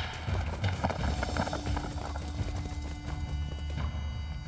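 Quick footsteps of several men running on a dirt path, over background music with a long held note.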